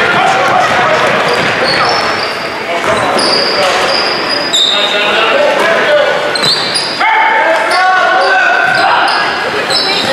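Basketball game in an echoing gym: the ball bouncing on the hardwood court and sneakers giving short high squeaks, over steady voices from players and spectators.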